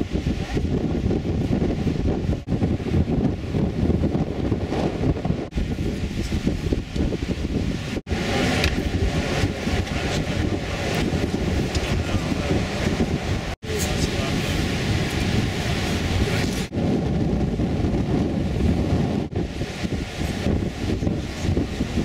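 Wind buffeting the microphone on an open beach, a steady rumbling noise, with indistinct talk from a crowd and surf behind it. The sound drops out for an instant several times.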